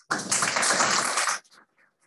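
An audience applauding briefly for about a second and a half, then stopping abruptly.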